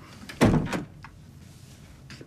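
A door being pushed shut, one short thud about half a second in.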